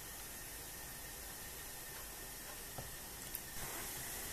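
Faint steady hiss of room tone, with a couple of faint ticks near the end.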